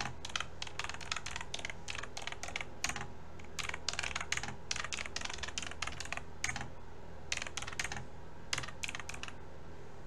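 Typing on a computer keyboard: irregular runs of quick keystrokes with short pauses between them, stopping shortly before the end.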